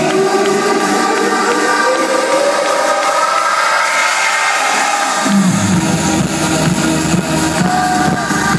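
Loud electronic dance music from an arena sound system during a DJ set. A build-up with a rising synth sweep and no bass gives way to a heavy bass drop about five seconds in.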